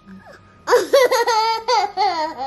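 A toddler laughing in a high-pitched run of giggles that starts about two-thirds of a second in, after a short quiet pause.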